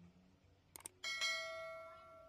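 A subscribe-button sound effect: two quick mouse-like clicks, then a bell chime about a second in that rings out and fades.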